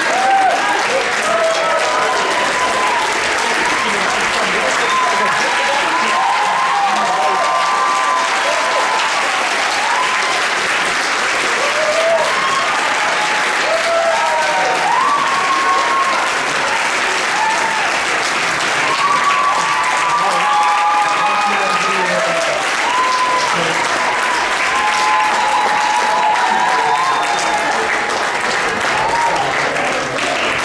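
A large audience applauding steadily, with many voices whooping and calling out over the clapping.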